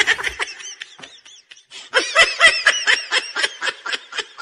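Laughter starting about halfway through: a rapid run of short, high-pitched 'ha' syllables, about four or five a second, fading gradually.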